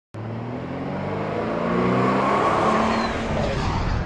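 A car engine running under load with a steady low drone. It starts abruptly and grows louder over the first two and a half seconds.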